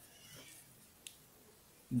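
Faint sound of a pen writing on paper, with a single short click about a second in.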